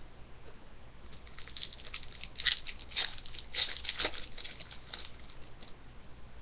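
Hockey card pack wrapper crinkling and tearing as it is opened by hand: a run of small crackles starts about a second in, is densest in the middle and thins out near the end.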